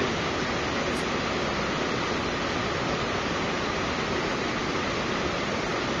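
Steady, even hiss of background noise, with no other sound on top.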